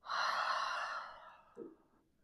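A woman's long audible sigh breathed out through the mouth, strongest at the start and tapering off over about a second and a half, ending in a brief soft murmur.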